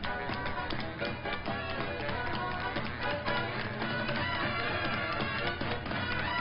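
Two dancers' tap shoes striking a hard stage floor in quick, rhythmic runs of taps, over accompanying music.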